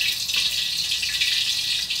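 Steady high hiss from a wok of cooking oil heating over a gas burner.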